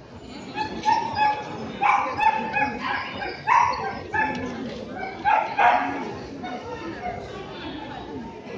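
A dog barking in a run of short, high-pitched yips, loudest in the middle of the stretch, over a murmur of voices.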